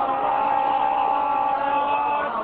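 A chanting voice holding one long steady note, which fades out near the end.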